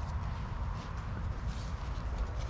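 Low, steady wind rumble on the microphone, with faint footsteps and rustles on a grassy, leaf-littered path.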